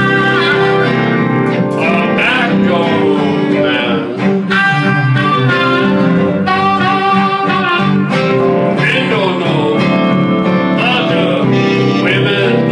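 A blues band playing live, with a blues harmonica blown into the vocal microphone, playing long held notes over electric guitar and bass.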